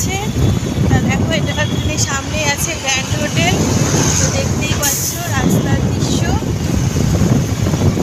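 Steady road and traffic noise heard from a moving vehicle in city traffic, with wind on the microphone. Voices talk over it, and there is a short laugh about halfway through.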